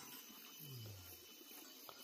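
Near silence: faint outdoor background, with one brief faint low tone falling in pitch near the middle.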